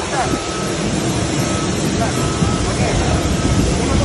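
Steady, loud rumble and hiss of a busy airport apron beside a parked airliner, with a faint high whine that comes and goes in short spells.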